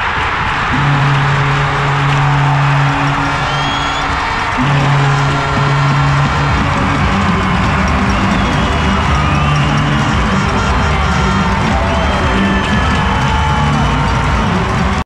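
Arena PA music with long held low bass notes, playing over the noise of a large ice hockey crowd cheering and shouting.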